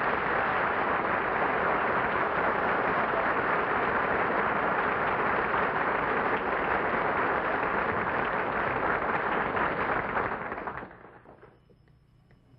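Studio audience applauding, a steady even clapping that starts as the piano music ends and dies away shortly before the end.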